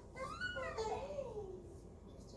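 An infant crying while a plaster cast is moulded over its head: one drawn-out wail that rises and then falls in pitch.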